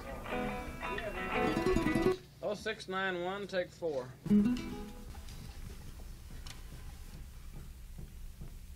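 Plucked acoustic guitar playing that breaks off about two seconds in. A wavering, voice-like held note follows for about two seconds, then low studio hiss with small scattered ticks.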